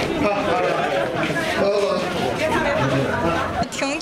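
Several people talking over one another, with someone urging "come on, don't be afraid".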